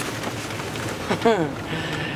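Inside the cab of a VW Westfalia Vanagon on the move, its engine and tyres on wet pavement give a steady low rumble. A short falling vocal exclamation comes about a second in.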